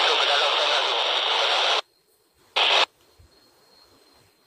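Radio static: a burst of hiss lasting about two seconds that cuts off abruptly, followed a moment later by a second, short burst.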